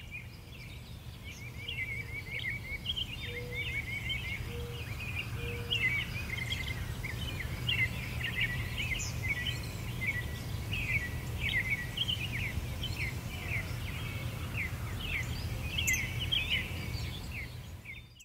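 Small birds chirping busily outdoors, a dense run of short, quick chirps, over a steady low background rumble.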